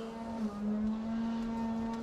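A steady drone from a distant lawn mower engine, holding one pitch apart from a brief dip about half a second in.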